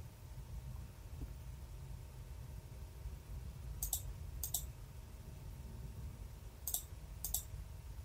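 Computer mouse clicking: two pairs of sharp clicks, about four seconds in and again near the end, over a faint low hum.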